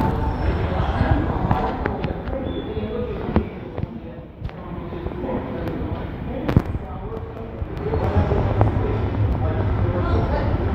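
V set double-deck electric intercity train running into the station, a low rumble growing as the cars pass close from about eight seconds in, with a few sharp clicks along the way.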